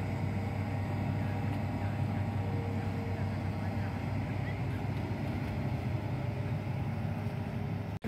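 Hitachi hydraulic excavator's diesel engine running steadily as a low, even hum, with workers' voices faint in the background.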